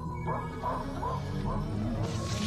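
A man's short, high yelps, about four in a row, each rising and falling in pitch, over background music with a steady held tone.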